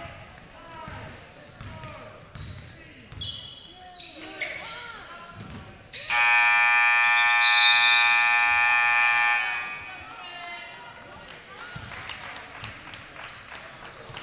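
Gym scoreboard horn sounding one long steady blast, about six seconds in and lasting about three and a half seconds, as the game clock hits zero to end the second quarter at halftime. Before the horn, a basketball bounces and crowd voices carry in the hall.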